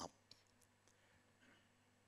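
Near silence: room tone with a faint steady low hum and a couple of tiny clicks.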